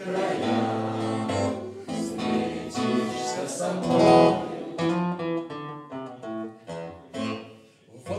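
Acoustic guitar strummed as accompaniment to a group singing a song together in Russian bard style. The music dips briefly quieter just before the end.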